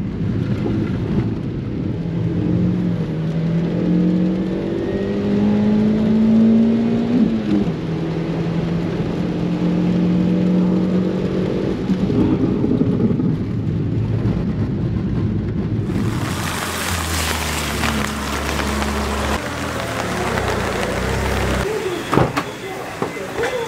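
Daihatsu Copen's 660 cc turbo engine heard from inside the car, its note climbing under acceleration on a wet track, dropping sharply about seven seconds in, then holding steady. About sixteen seconds in, a loud, even rush of water spray and rain over a low rumble takes over.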